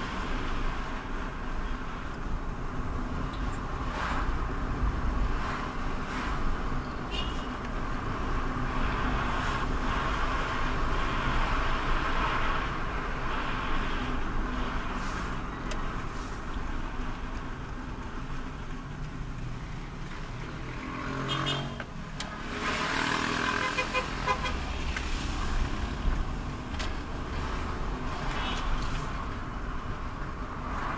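Car driving slowly through town streets, its engine and tyre noise heard from inside the cabin. A short car horn toot sounds about two-thirds of the way through.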